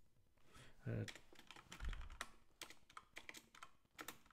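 Typing on a computer keyboard: a run of quick key clicks, with a low thump about two seconds in.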